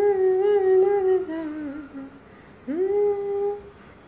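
A woman humming a tune unaccompanied. A long held note steps down and fades about two seconds in; a second note slides up, holds for about a second, then stops.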